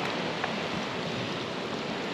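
Steady hiss of small waves washing onto the sand of a sand cay, with one faint click about half a second in.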